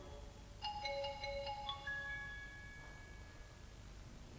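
Celesta playing a few soft, high bell-like notes about half a second in, which ring on and fade away over the next two seconds.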